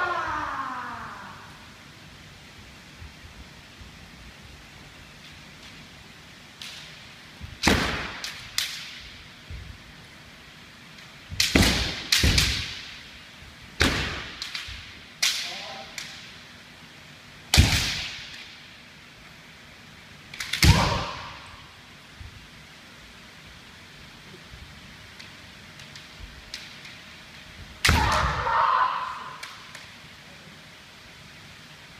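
Kendo sparring: bamboo shinai strikes on armour and stamping on a wooden floor, sharp cracks in about six bursts with an echo of the hall after each, and a shout near the end.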